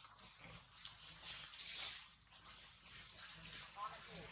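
Faint squeaky calls of a young long-tailed macaque, with a short falling squeak near the end, over a steady, wavering high hiss.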